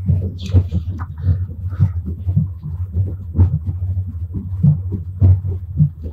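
Steady low rumble inside a Strizh train carriage, with the crackle of a paper booklet being handled and several short knocks.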